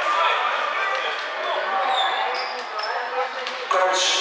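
Voices of players and onlookers talking and calling in an indoor sports hall, with a basketball bouncing on the court a few times and some short high squeaks near the middle.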